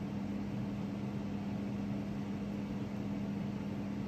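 Steady low hum with a faint hiss underneath, unchanging throughout: background room tone with no distinct event.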